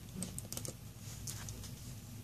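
A few light, irregular clicks and taps as a pen is handled and put to the paper of a book.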